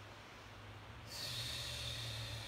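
A person's long breath out, a hissy rush that starts suddenly about halfway in and fades slowly, over a faint steady hum.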